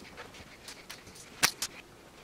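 Clothes hangers clicking and knocking together with the light rustle of t-shirts being handled, with two sharp clicks close together about a second and a half in as the loudest sound.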